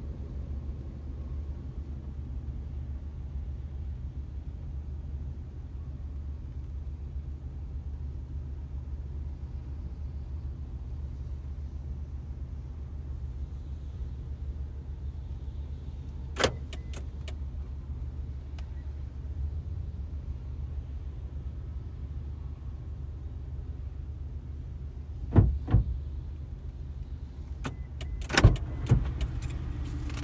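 Steady low hum of an idling car heard from inside the cabin. A sharp click comes about halfway through, and several louder knocks and clicks follow near the end, as things are handled inside the car.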